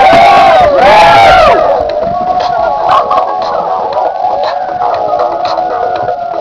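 Several voices howling together, overlapping calls that rise and fall in pitch and die away about a second and a half in. A held musical chord follows, with soft ticks about once a second.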